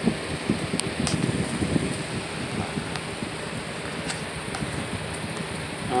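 Electric box fan running with a steady whoosh, with a few faint clicks over it.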